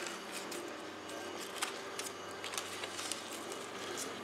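Faint handling sounds: scattered light ticks and rustles as a taped styrene strip is pressed by hand along the base of a plastic mold plug, over a low steady hum.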